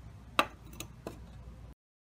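A few light clicks from a freshly cut glass bottle-neck slide being handled, the sharpest about half a second in. The sound cuts off to silence near the end.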